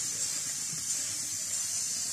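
Lit gas stove burner hissing steadily.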